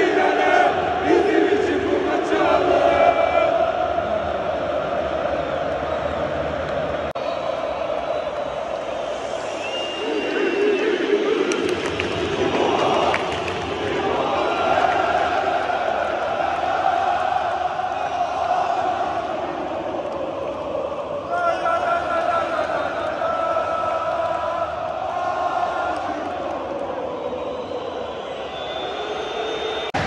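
Packed football stadium crowd chanting and singing in unison, a dense mass of voices, with the chant changing abruptly twice, about seven seconds in and again about two-thirds of the way through.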